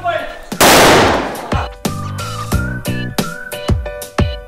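A firecracker bangs loudly about half a second in, its noise dying away over about a second. Background music with a steady beat follows.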